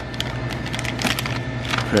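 Crinkly plastic snack bag rustling and crackling as it is gripped and handled, with a few sharp crackles, over a steady low hum.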